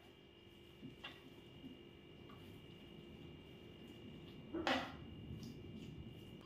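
Faint, soft sounds of a spoon stirring thick mashed potato in a frying pan, with a brief louder sound about three-quarters of the way in.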